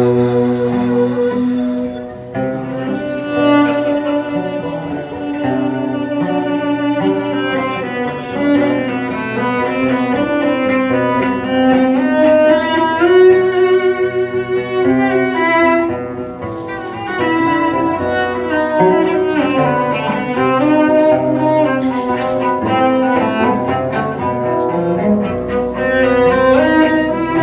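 A live acoustic trio of cello, oud and end-blown wooden flute playing a mazurka tune, with the bowed cello prominent and the melody running on without a break.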